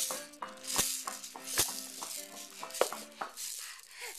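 A musical baby toy playing a tune of short notes while it is shaken and knocked about, with rattling and a few sharp knocks.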